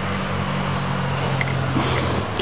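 Steady low engine hum, even in pitch, with a faint click or two near the end.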